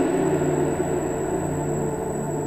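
A dense, sustained ambient drone from a live experimental improvisation. It holds steady in the low-middle range, with a thin, steady high electronic tone above it.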